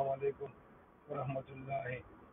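A man's voice speaking in two short phrases, with a pause between them.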